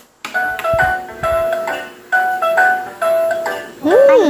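Electronic melody from a battery-operated Winnie the Pooh toy oven, set off by pressing one of its knobs: a simple tune of clear notes, each about half a second long. A few low handling thumps come about a second in.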